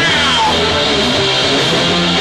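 Hardcore punk band playing live: distorted electric guitar with sliding, bending notes over bass and drums.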